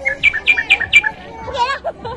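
Four quick, high, bird-like chirps in a row, about four a second, each sweeping downward, followed by voices.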